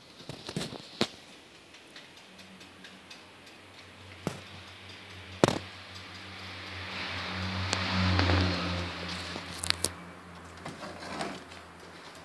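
Aluminium-framed mosquito screen door being handled: a series of sharp clicks and knocks from the frame and its fittings, the loudest about five and a half seconds in. In the middle a rushing noise with a low hum swells, peaks around eight seconds in and fades, and then a quick pair of clicks follows.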